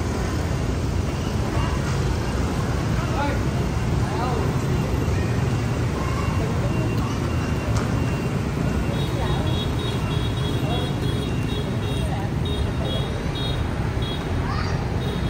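Steady street traffic, mostly motorbikes with some cars passing, under the chatter of people's voices. From about two-thirds of the way in, intermittent high beeps sound over it.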